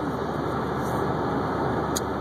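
Steady road and engine noise of a car being driven, heard from inside the cabin.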